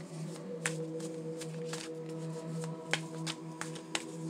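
A tarot deck being shuffled by hand, with scattered card clicks and two sharper snaps about three seconds in and near the end, over background music of steady, held, drone-like tones.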